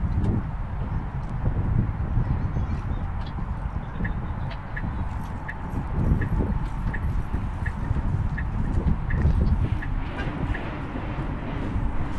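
Low, fluctuating rumble like wind on the microphone. Through the middle there is a run of short, high beeps, about one every 0.7 seconds.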